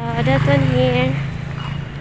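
Small motorcycle engine running right beside the microphone, its low drone dying away near the end, with a voice talking over it.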